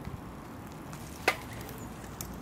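A child's bicycle passing on a leaf-strewn dirt path: a faint steady rustle, with one sharp click about a second in.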